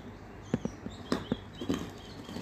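Fingernails picking and scratching at the packing tape on a cardboard shipping box, a quick run of sharp clicks and taps from about half a second in.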